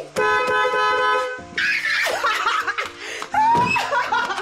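Background music with a woman's excited, wordless shrieks and laughter: a long held high cry early on, then bursts of laughing and shouting.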